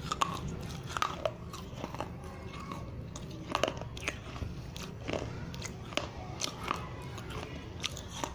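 A piece of baked clay diya being bitten and crunched between the teeth, then chewed with the mouth closed: sharp, irregular crunches, now single and now in quick clusters.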